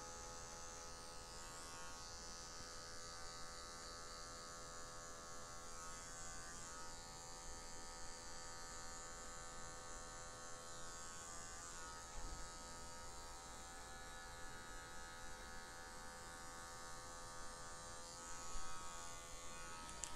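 Electric hair clipper with a half guard buzzing faintly and steadily as it cuts short hair, worked over the line of a fade to blend it out.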